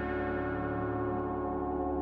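Background music bed of sustained, ringing bell-like tones held at a steady level.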